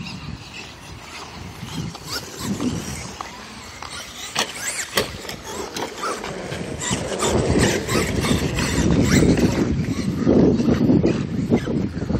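Electric radio-controlled monster trucks driving on asphalt, with motor and tyre noise that grows louder in the second half as a truck comes close.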